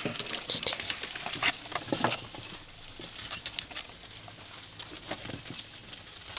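Young pet rat at a food dish on a plastic tray: irregular small clicks and scratches of its claws and teeth, busiest in the first two seconds.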